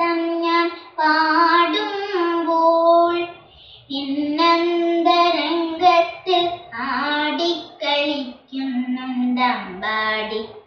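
A young girl singing a Carnatic-style devotional song unaccompanied, her voice holding notes and gliding between them, with a short pause for breath about three and a half seconds in.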